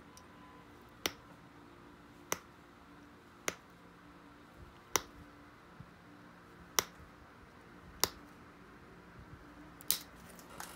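Pressure flaking the edge of an obsidian knife blade: a pointed flaker presses off small flakes, each one popping off with a sharp click, seven clicks spaced about one to two seconds apart.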